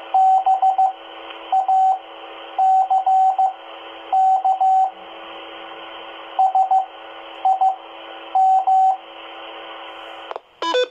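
Morse code (CW) practice heard over a 2-meter FM amateur repeater through a handheld transceiver's speaker: a single steady beep keyed in short groups of dots and dashes, about eight groups, over a constant thin radio hiss.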